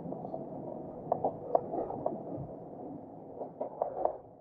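Land Rover Defender 110 crawling downhill in low range with no braking, its engine running steadily at idle, with a scattering of sharp knocks from the tyres and running gear over rock and dirt.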